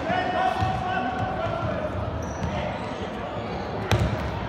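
A football thudding on a sports-hall floor during an indoor youth match, echoing in the hall, with one sharp, loud impact just before the end. A long shouted call from a player or spectator rings out over the play in the first second or so.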